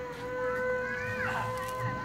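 Conch shell (shankh) blown in a long, steady held note.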